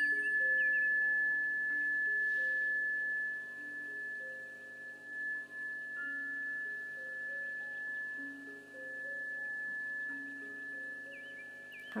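Chime bar ringing after a single strike: one high, pure tone holding and slowly fading, over soft background music of slow, low held notes.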